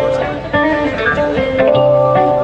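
A live band playing, led by electric guitar over a bass line and drums, with held chords.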